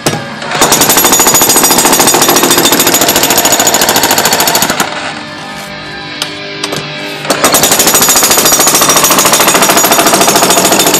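Hilti electric demolition hammer chiselling into a concrete slab: fast, steady hammering in two runs, broken by a pause of about two seconds midway.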